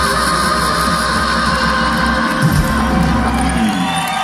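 Live band playing out the end of a song, a held low bass note that cuts off near the end, with the crowd cheering over it.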